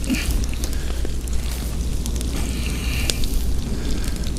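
Potatoes frying in oil in a pan over an open wood fire: steady sizzling with sharp crackles and a few clicks of a fork stirring them in the pan, over a constant low rumble.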